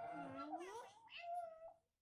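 Yellow plush talking dancing-duck toy repeating speech back in a high, squeaky, voice-like chatter, in two short phrases that stop shortly before the end.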